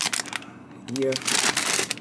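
Plastic grocery packaging and bags crinkling as groceries are handled and unpacked, in two spells of rustling.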